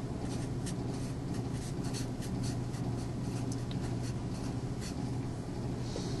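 A marker writing on a whiteboard: a run of short, irregular pen strokes over a steady low hum.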